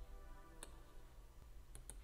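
Three faint, sharp computer mouse clicks, one about a third of the way in and two in quick succession near the end, over quiet background music with held tones and soft bass.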